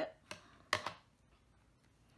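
Small scissors snipping the end off a strip of adhesive tape: one sharp snip about three quarters of a second in, with a fainter click just before it.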